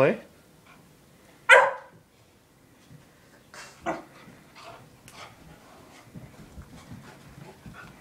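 A puppy gives one loud, sharp bark about a second and a half in, a play bark meant to get a cat to play, followed by a few fainter sounds.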